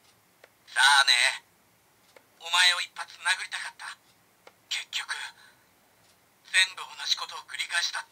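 Recorded voice lines played through the small built-in speaker of a CSM V Buckle, the Kamen Rider Ryuki belt replica: four short spoken bursts with quiet gaps between them. The sound is thin, with no low end.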